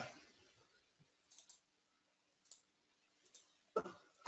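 Near silence with a few faint computer mouse clicks, and a short louder sound just before the end.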